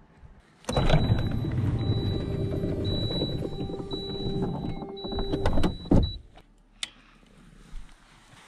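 A car's electric window motor running for about five seconds with a steady whine, then a thump as it stops, and a short click a moment later.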